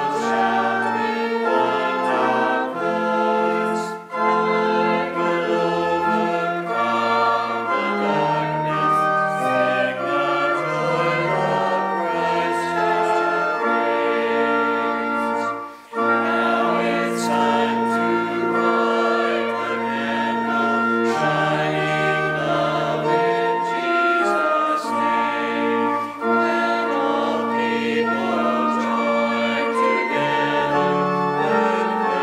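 An Advent hymn sung by a small group of voices with organ accompaniment, in sustained chords over a held bass line, with a brief pause about sixteen seconds in.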